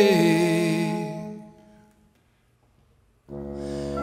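A wind ensemble with French horn and bassoon holds a chord under the last sung note, and both fade out within about two seconds. After a moment of dead silence, low held wind notes come in abruptly near the end.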